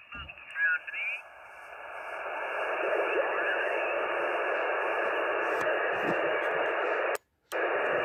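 Receiver audio from an Icom IC-706MKII in upper sideband on the 20-metre band as the tuning dial is turned: a brief snatch of garbled, off-tune sideband voice near the start, then steady band-noise hiss that swells over a couple of seconds. The hiss cuts out for a moment near the end.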